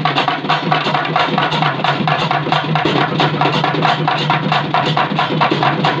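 Papare band music: double-headed barrel drums beaten with sticks in a fast, even rhythm of about four or five strokes a second, over a held brass note.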